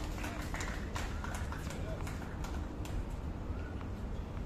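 Outdoor ambience at a tennis court: faint distant voices over a steady low rumble, with scattered short sharp clicks at irregular intervals.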